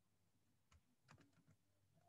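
Near silence with a faint low hum, broken by a few faint clicks: one a little under a second in, then a quick run of about four.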